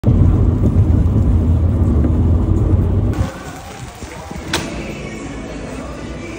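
Car driving on a wet motorway, heard from inside the cabin as a loud, steady low road-and-engine rumble. It cuts off abruptly about three seconds in to quieter room sound, with one sharp click about a second and a half later.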